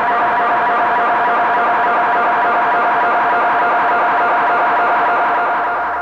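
Distorted acidcore electronic music holding a sustained, droning tone with no beat, starting to fade out near the end.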